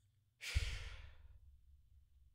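A man sighing, one breathy exhale into a close microphone about half a second in that fades away over about a second.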